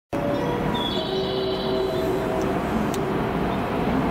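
Freight train approaching along the tracks: a steady rail rumble with a few faint steady whining tones over it, a higher one appearing about a second in and fading a second later.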